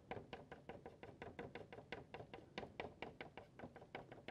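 A Mungyo soft pastel stick dabbing against paper on a wooden easel board, making faint, rapid taps, several a second, as short strokes of colour are laid on.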